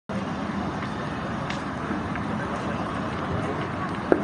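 Steady rushing wind noise buffeting a phone microphone, with a few faint clicks.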